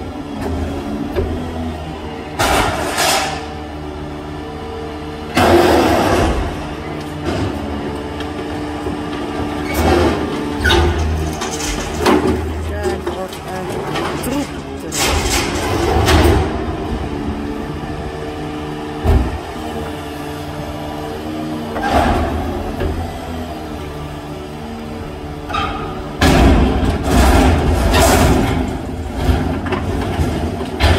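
A refuse truck's engine and crane hydraulics run with a steady low hum, broken several times by loud clanks and crashes as an underground waste container is lifted and emptied into the truck's hopper.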